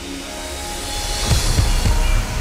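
Slowed-down, reverb-heavy R&B pop song. A rising swell builds, then the drums and bass come in with heavy low kicks a little over a second in.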